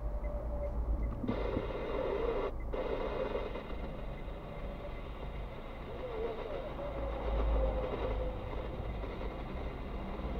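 Low steady rumble inside a car's cabin, its engine idling while the car stands in traffic. A faint voice-like sound comes in about a second in and lasts about two seconds.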